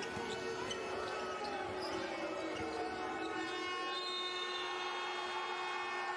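Basketball arena sound during the closing seconds of a game: a ball bouncing on the court over steady crowd noise, with several sustained horn-like tones held throughout.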